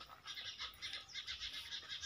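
Faint chirping of small birds, many short high notes.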